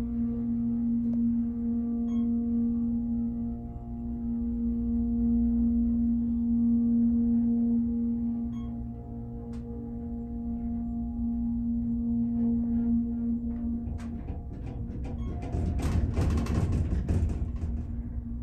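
Otis hydraulic elevator running upward with a steady hum from its hydraulic pump unit, which cuts off about fourteen seconds in as the car arrives. Rattling and sliding noise follows near the end as the doors open.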